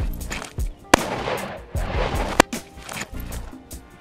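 Two rifle shots from an AR-15, about a second and a half apart, with background music running underneath.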